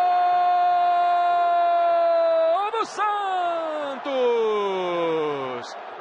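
A Brazilian TV football commentator's long goal shout, one loud voice held on a single steady note. About two and a half seconds in it breaks off into further drawn-out shouts that slide down in pitch.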